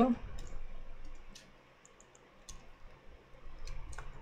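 Computer keyboard keys clicking as keyboard shortcuts are pressed: a handful of separate, quiet keystrokes with pauses of a second or so between them.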